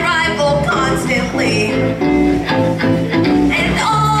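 Live rock-and-roll band with electric bass and electric guitar backing a female vocalist who is singing.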